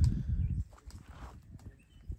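A sharp knock, then a few soft steps and scuffs on dry dirt, fading after about half a second into faint rustling and small ticks.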